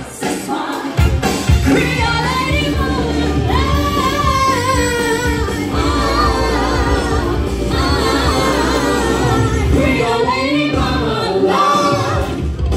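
A woman singing into a handheld microphone over loud amplified backing music with heavy bass, from a live stage show.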